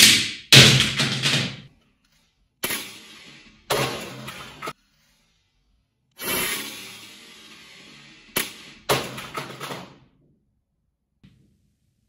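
Plastic StackMat cubing timer thrown against a wall: about five separate sudden thuds and knocks, some ringing on for a second or so, with music mixed in.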